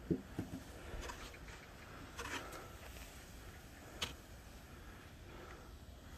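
Faint scraping of plastic snow pushers being shoved across a snow-covered golf green, with one sharp click about four seconds in.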